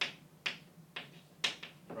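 Chalk writing on a blackboard: four sharp taps as the chalk strikes the board, the loudest about one and a half seconds in.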